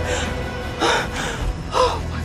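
A woman gasping twice in fright, sharp breaths about a second apart, over a low droning music score.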